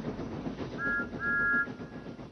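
A train whistle sounding twice, a short toot and then a longer one, each made of two pitches together. A faint background rumble fades away beneath it.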